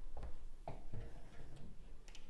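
A few light clicks and soft knocks from handling at a wardrobe door.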